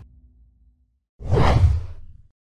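A news-bulletin transition whoosh: a sudden loud swoosh with a deep low rumble, starting about a second in and fading away. Before it, the preceding audio dies away to silence.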